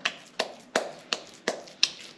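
Hands patting a ball of cooked pearl millet (kambu) dough into shape: six short, sharp pats, about three a second.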